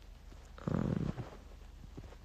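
A man's short, low hum with his mouth closed, about half a second long, starting a little over half a second in, over faint room noise.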